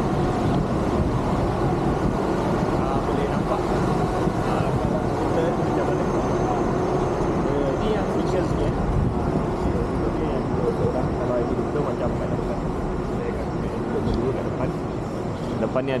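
Steady low rumble of riding an electric mobility scooter: motion and wind noise on the camera microphone, with faint voices underneath.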